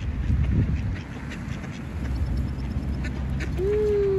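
Mallard ducks quacking and calling, with wind rumbling on the microphone.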